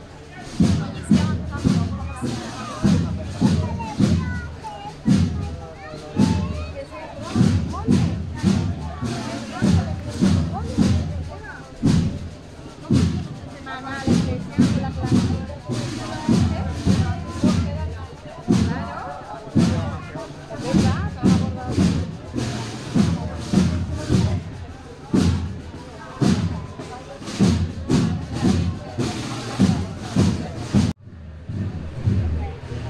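A procession band playing a slow march, driven by a steady, heavy bass-drum beat, with crowd chatter mixed in.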